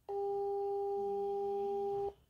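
A steady, mid-pitched electronic beep tone lasting about two seconds, starting and cutting off abruptly.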